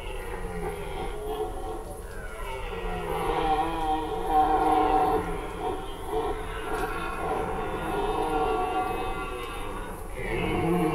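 Red deer stags roaring during the rut, several long, wavering calls overlapping one another, loudest about four to five seconds in.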